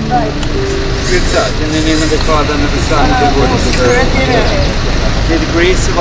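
Indistinct voices outdoors over a steady low rumble, with no clear words.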